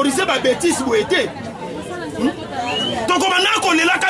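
Speech only: continuous talking by voices, without clear breaks.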